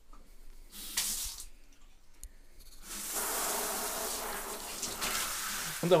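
Bathroom sink tap water: a short rush of water about a second in, then the tap turned on about three seconds in and running steadily into the basin.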